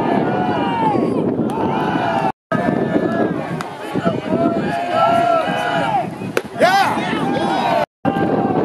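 Baseball crowd and players calling out and shouting over one another, no single voice clear, with one sharp crack about six and a half seconds in.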